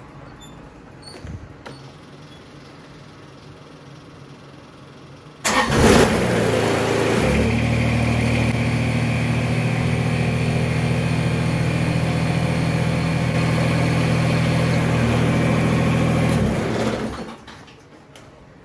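Kubota BX2370 compact tractor's three-cylinder diesel engine starting about five seconds in, running at a steady idle for about nine seconds, then shut off near the end.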